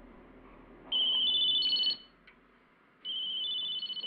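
A telephone ringing twice with an electronic ring. Each ring is about a second of high trilling tone that steps up in pitch, and the second ring is quieter.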